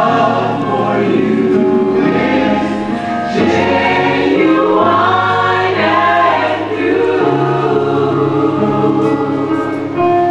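Gospel choir singing a slow worship song over a low bass accompaniment, with long held notes.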